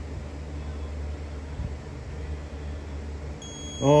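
A steady low hum with a faint knock, then near the end a thin, high, steady electronic buzz tone comes on: a timing buzzer signalling that the magneto has reached its firing point as the Hemi is turned slowly by hand, at 39 degrees on the degree wheel.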